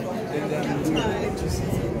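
Indistinct background chatter: several people talking at once, with no clear words.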